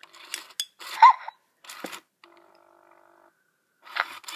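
Plastic spoon clicking and scraping against the applesauce container as food is scooped, with a short high squeak about a second in.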